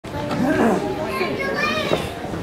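Many children's voices chattering and calling out at once, an overlapping babble of young voices.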